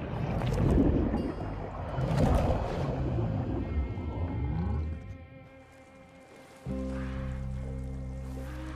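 Documentary soundtrack: loud, surging sound-design noise with sweeping pitch glides over the score for about five seconds, dying away, then a sustained low music chord that starts abruptly near the end.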